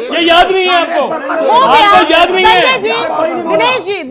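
Several men's voices talking over one another in a heated argument, crosstalk with no single speaker clear.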